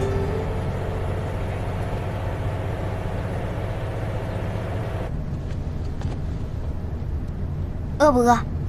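Steady low rumble of a moving vehicle heard from inside, with the tail of background music fading out over the first few seconds.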